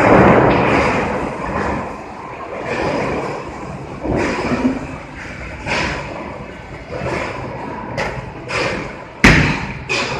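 A bowling ball landing on the lane with one sharp, loud thud near the end, over the steady noisy din of a bowling alley.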